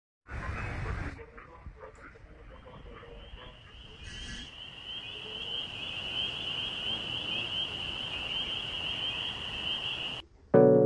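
An animal calling: a steady, high-pitched, finely pulsing buzz that grows louder from about four seconds in, over low background noise. A short loud rush of noise comes in the first second.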